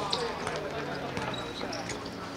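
Footballers shouting on the pitch, with a few short knocks of the ball being kicked.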